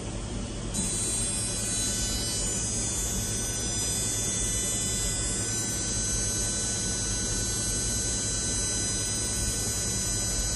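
Steady electrical hum with several thin, high-pitched steady tones, from the LASIK excimer laser system's equipment while it runs.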